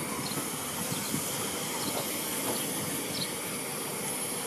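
Steady hiss of steam from a steam locomotive standing at the head of its train, with a low rumble underneath.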